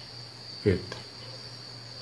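A steady high-pitched tone over a low hum, with one short spoken word a little after half a second in.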